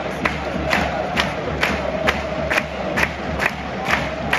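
Football stadium crowd chanting together, with sharp claps in unison about twice a second.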